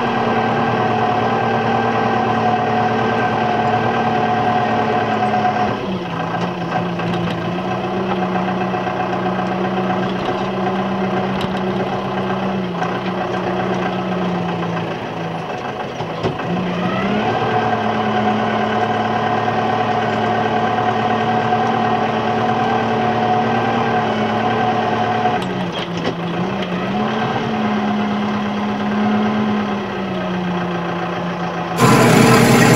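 Tractor engine running steadily, heard from the operator's seat. Its speed drops about six seconds in, picks up again around seventeen seconds, then dips and recovers briefly near twenty-six seconds, as with throttle or load changes while the front-end loader works.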